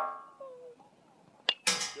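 A bat cracking against a baseball in front-toss batting practice, twice: the ringing of the first hit fades out at the start, and about a second and a half in comes a sharp crack of bat on ball, followed at once by a louder metallic rattle as the ball hits the cage's chain-link fence.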